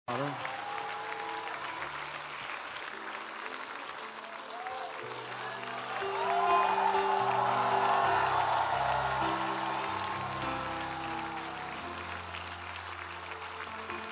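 Crowd applause over backing music of slow, held chords. The clapping swells about six seconds in and eases off toward the end.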